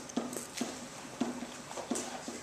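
Stylus tapping and scraping on the hard surface of an interactive whiteboard as words are handwritten: a handful of short, irregular clicks.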